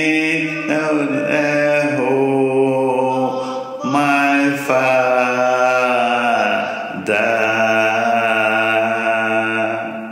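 A single voice chanting in long, held, sung notes, with pitch slides between them and short breaks about four and seven seconds in.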